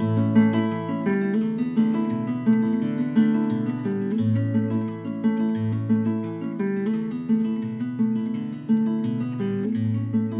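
Nylon-string classical guitar played solo, picked chords over a low bass note that comes back every second or so.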